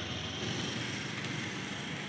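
Steady outdoor background noise with a low rumble and no distinct events, like distant traffic.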